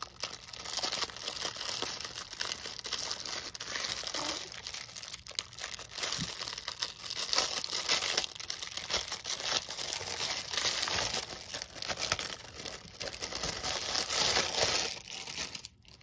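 Thin clear plastic bags and their plastic packet crinkling as they are handled and pulled out by hand: a continuous crackle of small snaps that stops just before the end.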